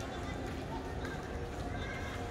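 Steady low outdoor background noise with faint distant voices.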